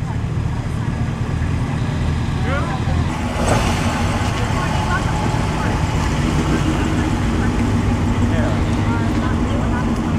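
A vintage Cadillac convertible's engine running steadily at low speed as the car rolls slowly past, with people talking in the background.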